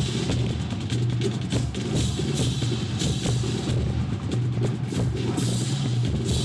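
College marching band playing, led by its drumline: rapid snare and bass drum strokes over a low sustained bass note.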